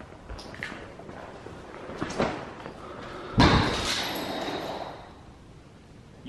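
A single loud bang about three and a half seconds in, ringing and echoing for over a second through a large empty room, after a few faint knocks.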